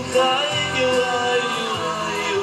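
Music: a live band with strings, bass and guitar playing a slow ballad, with a melody line held with vibrato.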